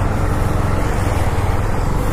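KTM 390 single-cylinder motorcycle engine running as the bike rides along, under steady wind rush on the action camera's microphone.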